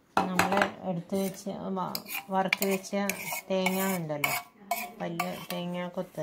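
A metal spoon stirring and scraping inside a steel vessel of thick unniyappam rice-and-jaggery batter. Each stroke against the metal gives a short squeaky, ringing tone, in a quick repeated series.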